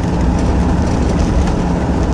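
Steady road and engine noise inside the cabin of a moving vehicle: a low, even rumble.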